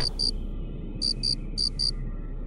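Cartoon cricket-chirp sound effect: short high chirps in pairs, three pairs with pauses between, the stock gag for an awkward silence.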